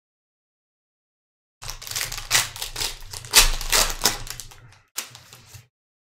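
Foil trading-card pack being torn open and its wrapper crinkled, a dense crackle of about three seconds. A single sharp snap and a short rustle follow about five seconds in.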